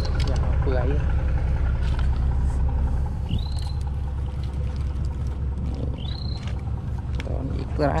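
A steady low engine drone, loud and unbroken, with two short high chirps about three and six seconds in.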